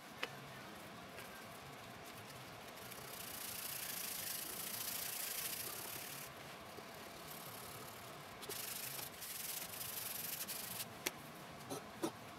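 Light hand sanding of a bloodwood headstock overlay with 220-grit sandpaper on a sanding block, done between coats of Tru-Oil grain filler. It makes a faint hiss of paper rubbing on wood, fullest from about three to six seconds in and again later. There is a sharp click just after the start and another about a second before the end.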